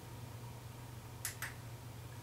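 Quiet studio room tone with a low, steady hum, and two short, faint clicks close together a little past the middle.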